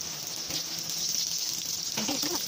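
Egg frying in hot oil in an electric rice cooker pot, a steady sizzling hiss.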